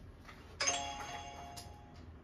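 Countdown timer alarm: a bell-like chime that starts sharply and rings out over about a second, signalling that the countdown has run out and the next 15-minute session begins.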